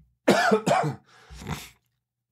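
A man coughing: two loud coughs in quick succession, then a softer one about a second in.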